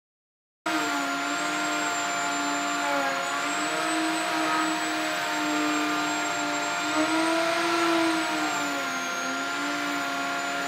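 Router running at full speed in a slab-flattening sled, its bit surfacing a wood-and-epoxy slab. It starts abruptly just under a second in, and its steady whine sags briefly in pitch twice as the bit takes load.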